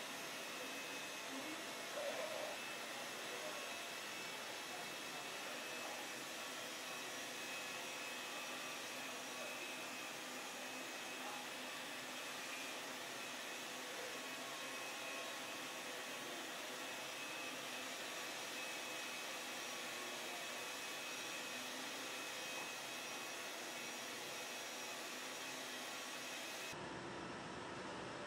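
Steady whirring hiss of a handheld rotary polisher buffing car paint, over workshop air noise, holding an even pitch throughout. The highest treble cuts off abruptly about a second before the end.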